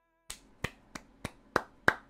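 A run of sharp clicks or snaps in an even rhythm, about three a second, starting shortly after the beginning.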